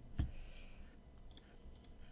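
Wireless Logitech computer mouse clicking: one sharp click a fraction of a second in, then a few faint clicks in the second half.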